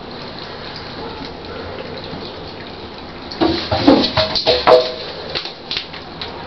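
A kitten playing in an empty bathtub: after a quiet stretch, a burst of scrabbling, rattling clatter begins about halfway through and lasts about two seconds.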